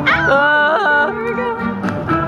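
Background music: a melody line sliding up and down in pitch over steady sustained accompaniment.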